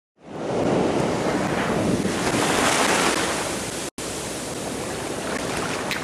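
Ocean surf washing steadily, fading in at the start, with a brief cut to silence about four seconds in.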